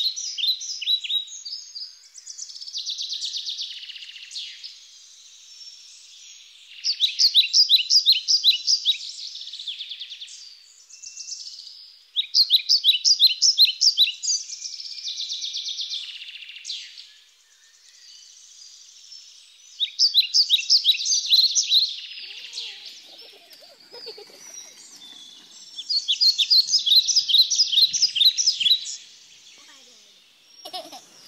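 A songbird singing, repeating a bright phrase of rapid high notes lasting two or three seconds, about five times, with short pauses between phrases.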